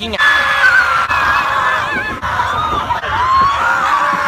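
Several people screaming together on a roller coaster, starting right after a shout and held in long, overlapping, wavering screams over a steady rush of noise.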